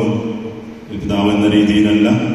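Slow sung chant, a voice holding long notes; it fades briefly about half a second in and comes back about a second in.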